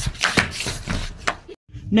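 A quick run of sharp percussive hits, about four a second and unevenly spaced. It cuts off abruptly into a moment of silence near the end, just before a man's voice begins.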